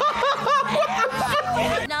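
A man laughing hard, a quick run of short laughs repeating about four times a second.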